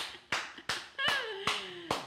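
Several hand claps of applause, about three a second, with a voice drawing out a note that slides down in pitch across the second half.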